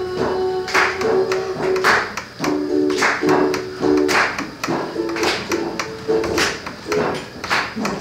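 Acoustic guitar strummed in a steady rhythm, about two strokes a second, with the chord changing every few strums: an instrumental passage of a song with no singing.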